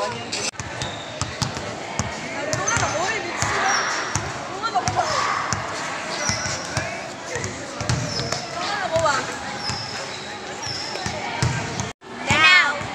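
Basketball dribbled on a concrete floor, bouncing again and again with short dull thuds, while voices talk around it.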